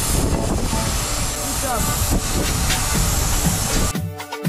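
Steady hiss of air at a vehicle tyre's valve through an attached hose, with a low rumble underneath.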